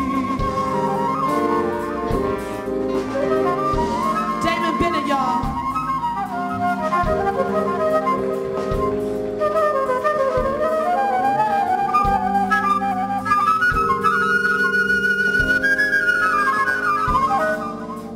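Concert flute playing a solo with a live band, its melody winding up and down over sustained chords and a steady beat.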